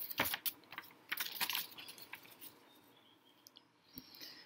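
A quick, irregular run of small clicks and rattles through the first two and a half seconds, fading to a few faint ticks near the end.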